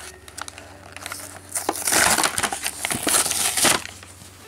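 An action figure's plastic blister pack and card backing being torn open. A few light crackles come first, then a loud, continuous crinkling and tearing for about two seconds near the end.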